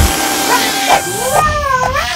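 Cartoon soundtrack: a short burst of noise at the start, then from just past the middle a wavering, gliding high-pitched cry from an animated character.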